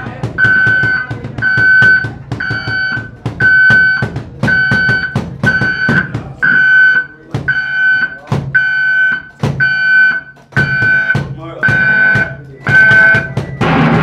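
Live band music: a drum kit playing under a high electronic tone that pulses evenly, about four beeps every three seconds, which is the loudest thing heard.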